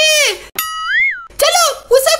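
A high-pitched, sped-up cartoon voice is cut off about half a second in by a short cartoon boing sound effect: a clean held tone that swoops up and back down. Then the high voice starts again.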